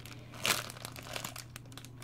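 Cellophane wrapping crinkling softly as small tea packets are handled, with one sharper crackle about half a second in.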